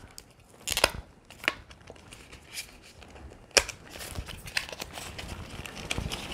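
Mascara packaging being opened by hand: scattered crinkling and tearing with a few sharp clicks, getting busier from about four seconds in.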